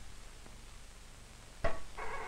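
Low background hiss. About a second and a half in comes a sharp snap as an alpha-particle counter's loudspeaker cuts in, then its steady buzz. The buzz is the snaps of a transistor detector, one per alpha particle, running together in the full beam.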